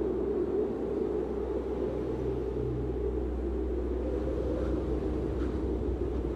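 A steady low rumble with no clear events, with a faint low tone about two to three seconds in.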